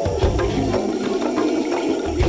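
Background music: an instrumental passage of an upbeat song, with bass notes and a steady percussion beat.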